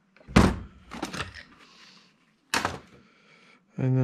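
Hard thunks of objects being handled and set down on a cluttered workbench: a loud thunk just after the start, a few lighter knocks about a second in, and another sharp thunk about two and a half seconds in.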